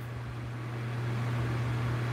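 Steady low hum with a faint even hiss: indoor background noise from an appliance or the room's electrical or air system.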